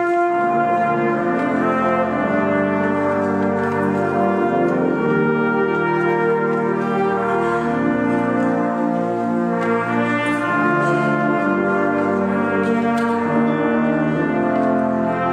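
Brass ensemble of trumpets, French horns and tuba playing music in long held chords, the notes moving every second or so.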